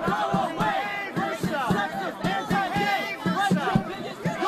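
A protest crowd shouting and chanting over one another, many raised voices overlapping with no clear words.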